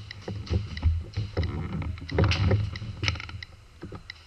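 Paintball markers firing in irregular pops, some in quick strings, over a rumbling, knocking handling noise from the moving camera.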